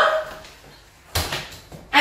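A single knock about a second in, with a short ring after it, as the folded Uppababy Vista pram is set down standing upright on its standing fold on a tiled floor.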